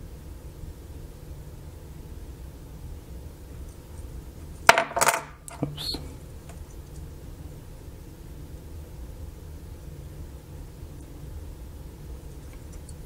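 Small circuit board handled and turned over in the fingers: a short clatter of sharp clicks about five seconds in, over a low steady hum.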